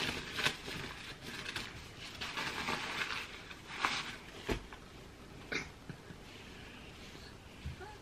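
A disposable nappy crinkling and rustling as it is unfolded by hand, in several bursts over the first four seconds, then quieter.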